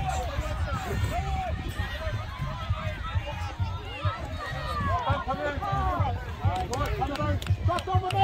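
Many voices, largely children's, talking and calling out over one another, too tangled for any words to stand out, over a low rumble of wind on the microphone.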